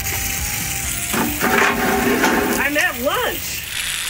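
Water spraying from a pump-pressurised water bottle: a steady hiss, with a person's brief voiced sounds in the middle.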